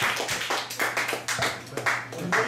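A small audience clapping, the scattered claps thinning out toward the end.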